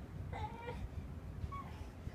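A short, high, whiny call, about half a second long, held on one pitch and dropping at the end, a little after the start, with a fainter brief call near the end.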